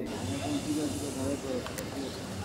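Steady hiss with faint, distant voices under it.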